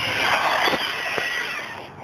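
OFNA GTP radio-controlled on-road car with a brushless motor making a high-speed pass at about 52 mph. A rushing tyre hiss carries a thin, high motor whine; it is loudest in the first second and then fades away.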